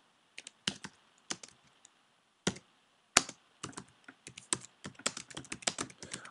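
Keystrokes on a computer keyboard typing a short sentence: a few spaced taps at first, then quicker, denser typing over the second half.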